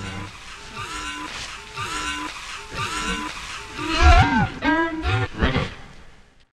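Sound-design sample of strange, pitch-bent vocal calls, a short phrase repeating about once a second, with a louder deep swoop about four seconds in.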